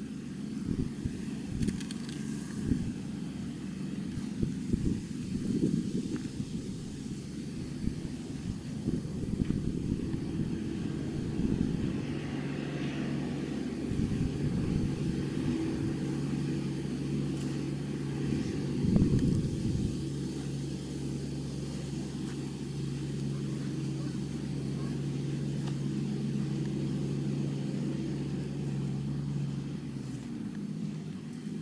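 An engine or motor running steadily at one constant pitch, most plainly from about twelve seconds in, with irregular low rumbling on the microphone before that.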